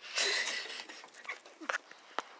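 Close rustling hiss of a pet rat's fur pressing against the phone's microphone, lasting about the first second, followed by a few light ticks.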